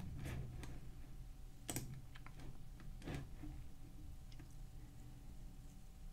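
Faint clicks of a computer mouse, a few scattered ones with two clearer clicks about two and three seconds in, over a low steady hum of room tone.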